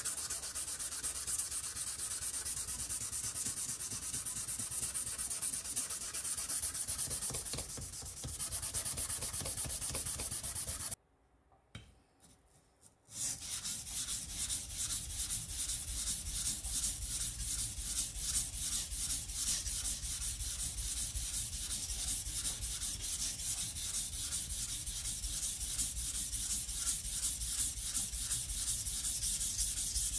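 A steel sashimi knife blade being ground on coarse abrasive: a steady rasping grind on the back of the blade, a brief break about eleven seconds in, then quick, even back-and-forth strokes of the blade on a whetstone, grinding down the protruding heel.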